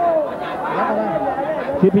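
Speech: a man's voice over crowd chatter in the arena.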